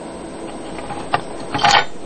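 Faint handling noise from the opened laminator's metal parts being held and moved, over a low steady hiss. There is a single light click about a second in and a brief rustle or scrape near the end.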